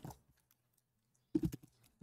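A few computer keyboard key clicks near the end, after a near-silent stretch.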